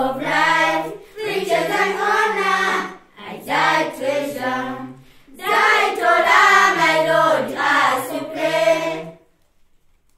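A group of voices singing a slow song in phrases with short breaks between them, stopping about nine seconds in.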